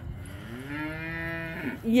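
A goat bleating once: a single long call of about a second and a half that rises at the start and then holds steady. It is a goat calling for its food.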